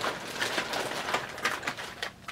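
Hands rummaging among small items, making a quick run of light clicks, taps and rustles.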